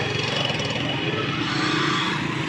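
Dense street traffic close by: motorcycle and auto-rickshaw engines running, a steady engine noise.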